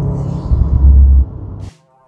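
Low rumble of a car driving hard uphill, road and wind noise on a front-mounted camera, swelling heavier about half a second in. It drops away after about a second and fades to near silence.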